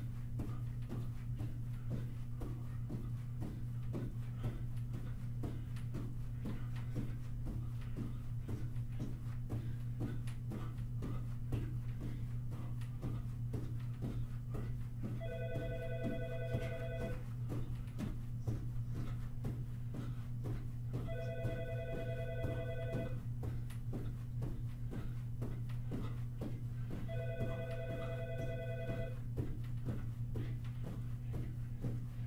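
A telephone rings three times from about halfway through, each ring a trilled electronic warble of about two seconds, repeating every six seconds. Underneath runs a steady low hum, with soft regular thuds of feet landing in jumping jacks, about two to three a second.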